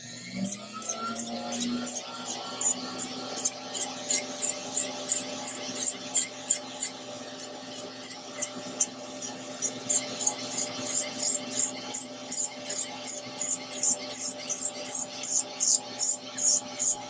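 Electric podiatry drill spinning up with a rising whine, then running steadily. A Moore's sanding disc on its mandrel rasps across thick psoriatic callus in short strokes, about three a second.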